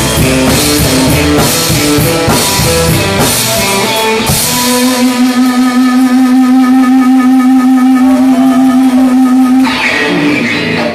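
Live blues trio of electric guitar, bass and drum kit playing together. About halfway through, the drums and bass drop out and the electric guitar holds one long sustained note until near the end.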